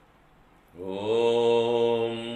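A man chanting a Sanskrit mantra: after a brief near-quiet pause, he starts one long, steady held note about three quarters of a second in.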